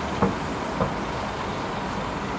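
Steady background rumble, with two brief faint sounds about a quarter second and nearly a second in.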